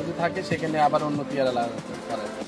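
A man talking, with background music faintly underneath.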